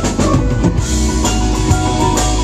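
Live band playing an instrumental passage: electric guitar over a drum kit, loud and steady.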